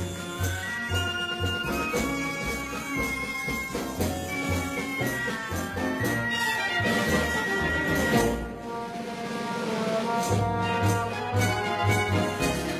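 A brass-led band plays the accompanying music. A long high note is held for about two seconds; just after it a short rushing, unpitched passage follows before the band picks up again.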